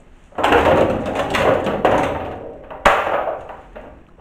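Close rustling and scraping handling noise, broken by a single sharp knock a little under three seconds in, then more scraping that fades out.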